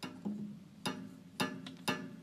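Tack piano: an upright piano whose felt hammers have thumbtacks pushed into them, striking the strings for four separate notes. Each note is a sharp strike that rings briefly.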